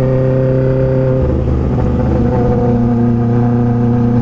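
Honda CB600F Hornet's inline-four engine running at steady cruising revs while the bike is ridden, its pitch holding nearly constant. Wind rumble on the microphone sits underneath and strengthens about a second in.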